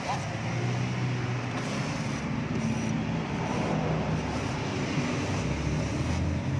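Steady low background hum with a hiss over it, unchanging throughout.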